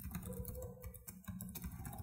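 Typing on a computer keyboard: a quick, fairly faint run of keystrokes.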